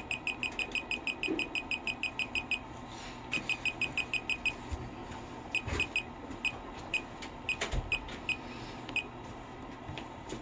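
JUKI DDL-9000C sewing machine's touch-panel control beeping as the needle-thread-tension down arrow is held: a rapid run of short, high beeps, about six a second, each beep one step down in the tension value. After a brief pause about three seconds in, the run resumes, then thins to slower single beeps. A couple of dull thumps come near the middle.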